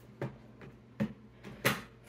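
Three light knocks and clicks, the loudest near the end, from makeup palettes being handled in a storage drawer.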